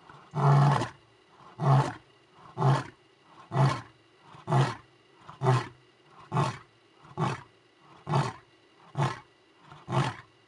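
Male lion roaring: one long full roar just after the start, then a run of short grunting roars about one a second, each a little shorter and fainter toward the end, the grunting tail of a roaring bout.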